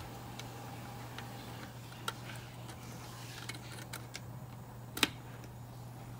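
Steady low hum from the running PC's power-supply fan, with a few sharp clicks, the clearest about two and five seconds in, as a USB plug is handled at the motherboard's rear ports.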